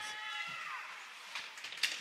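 Hockey rink game sound: a voice calls out briefly at the start, then low rink noise of skating play, with a sharp stick or puck click near the end.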